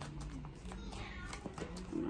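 A deck of tarot cards shuffled by hand, soft clicks of cards slipping against each other, with a brief pitched sound that slides down in pitch about a second in.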